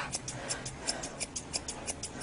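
Rapid snipping of grooming thinning shears cutting dog hair, a quick run of short, sharp ticks about six a second as the edge of a Newfoundland's ear is trimmed.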